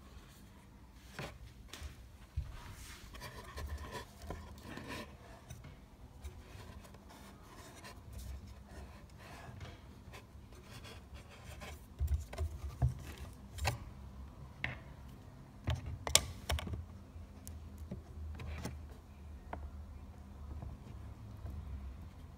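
Plastic parts of a Beurer humidifier being handled and fitted together during reassembly: scattered clicks and knocks with rubbing. A cluster of clicks comes a little past halfway, and the sharpest click a few seconds after that.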